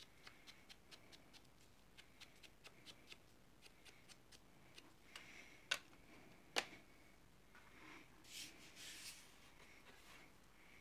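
Faint, quick dabbing taps of a foam-tipped ink blending tool on the edges of a paper print, darkening them with ink, then two sharper knocks a little past halfway and a short rubbing sound near the end.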